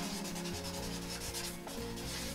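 Felt-tip marker rubbing and squeaking across a paper sheet on a wall as words are written, in a series of short strokes.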